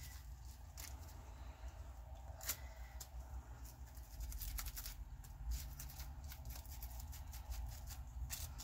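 Faint, irregular soft taps and light rustling as a foam ink dauber is dabbed over a plastic stencil on paper, over a steady low hum.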